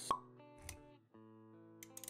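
Intro music with sound effects: a sharp pop just after the start, a softer low thud just over half a second later, then a brief gap before the music's held notes pick up again.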